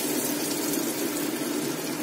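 A small chana dal vada sizzling steadily in hot oil in an aluminium kadhai, a test piece dropped in to check that the oil is hot enough.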